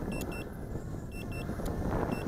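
Drone remote controller sounding its return-to-home alert: short high-pitched double beeps, repeating about once a second, over a steady low noise.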